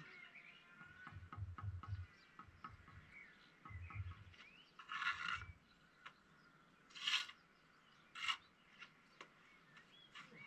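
Steel brick trowel scraping mortar on bricks in short strokes, with three louder scrapes in the second half and a few soft knocks earlier. Birds chirp faintly behind.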